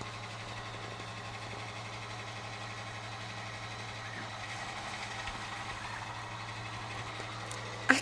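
A steady low hum over faint even hiss, with no distinct event: background room tone.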